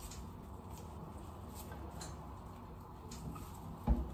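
Faint scattered ticks and rustles of carnation stems being handled and set into a metal vase, with a single low thump just before the end.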